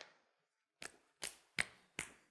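About five short, sharp clicks or taps, unevenly spaced, with no speech between them.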